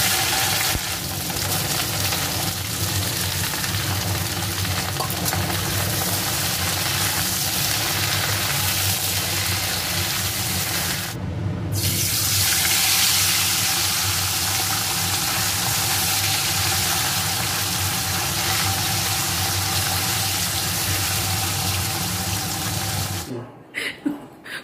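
Food sizzling as it fries in hot oil in a steel wok, a steady hiss with a faint hum underneath. The sound drops out briefly about halfway, then the frying carries on.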